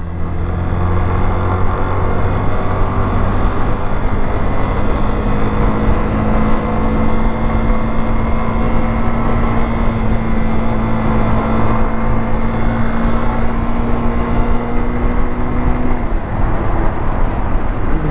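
Yamaha Fazer 250's single-cylinder four-stroke engine running steadily at cruising speed under a rush of riding noise. Its note steps down slightly about two seconds before the end.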